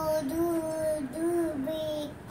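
A toddler singing in long held notes, each on a nearly level pitch with a brief dip between them, about four notes in two seconds.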